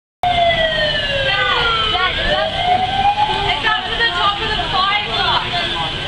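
Fire truck siren wailing, falling in pitch and then rising again before fading out about halfway through.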